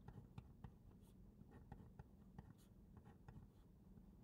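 Faint scratching and tapping of a felt-tip marker writing on paper, a string of short separate strokes as letters and subscripts are written out.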